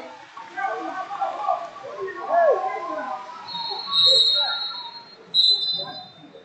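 Raised voices of coaches and spectators shouting in a large gym, then a whistle blown twice: a steady, high blast of about a second, three and a half seconds in, and a shorter one near the end.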